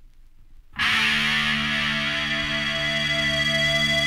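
A quiet gap, then about three-quarters of a second in a loud distorted electric guitar chord starts suddenly and is held, ringing on steadily: the opening of a 1982 punk record.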